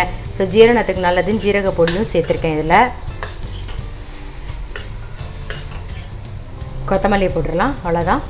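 Metal spoon stirring grated carrot and cabbage in a stainless-steel kadai over the heat, scraping the pan with a few sharp clinks of spoon on steel, over a light sizzle.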